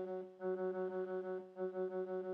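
Ableton Operator synth on its "Brassy Analog" brass patch, playing one repeated note from an arpeggiator at about six or seven notes a second, with a short gap near the middle.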